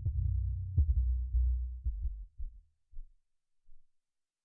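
Low, dull thumps over a low hum, fading away about three seconds in.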